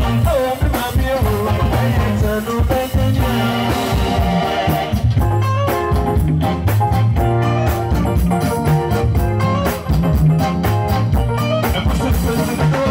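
Live highlife band playing over a PA, with electric guitar, bass guitar and drum kit. A male singer's voice carries the first few seconds; after that the band plays on without vocals, with busy, even drumming.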